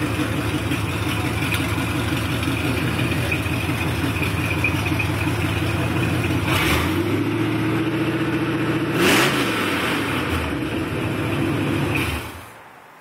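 1974 Chevy C10 pickup engine running at idle through open headers, with a steady pulsing exhaust note. It is blipped briefly just past halfway, then revved once about nine seconds in, rising and falling back to idle.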